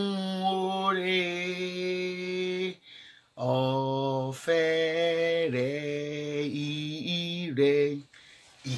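A woman's voice chanting a devotional song, unaccompanied, in long held notes. It breaks off briefly about three seconds in, then goes on with a lower phrase that steps down and up in pitch.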